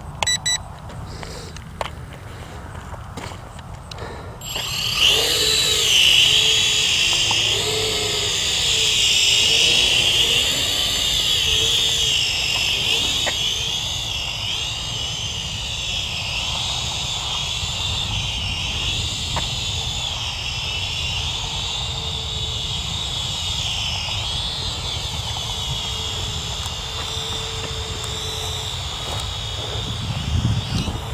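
Small toy quadcopter's motors and propellers spinning up about four seconds in, then a steady high-pitched whine that wavers up and down in pitch as it takes off and flies.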